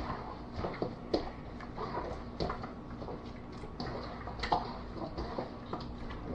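Raw chicken pieces being tossed by a gloved hand in a stainless steel bowl to coat them in dry seasoning: irregular soft wet slaps and rustles of the meat, with small clicks against the bowl.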